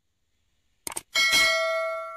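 Two quick mouse-click sound effects, then a bright bell chime that rings on and slowly fades: the notification-bell sound of a subscribe-button animation.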